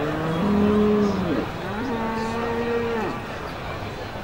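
Limousin cattle mooing: two long moos, the first rising in pitch and then dropping away, the second steadier and held for over a second.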